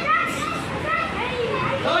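Children's voices: several boys talking and calling out over one another.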